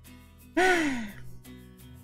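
A person's voice lets out a single breathy sigh-like exclamation about half a second in, falling in pitch and fading within about half a second, over quiet background music.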